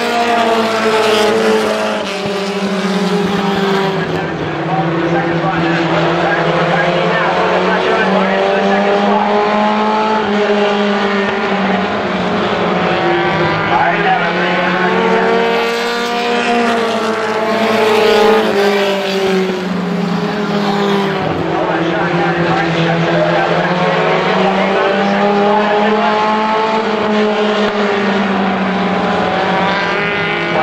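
Several short-track stock cars racing around a paved oval, their engines running hard. The engine pitch rises and falls again and again as the cars accelerate and lift through the turns.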